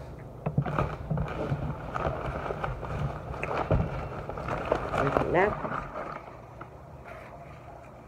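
Indistinct talking that forms no clear words, busiest in the first six seconds and quieter near the end, over a steady low hum.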